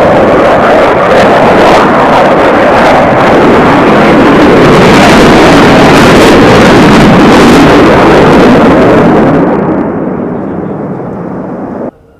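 Eurofighter Typhoon's twin Eurojet EJ200 turbofans at high power during a hard turn: a loud, steady jet noise with a crackling edge. It fades from about three quarters of the way through and drops away sharply at the very end.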